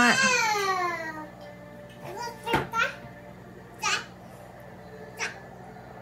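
A young child's voice: one long, high call falling in pitch over the first second, then a few short sounds and clicks.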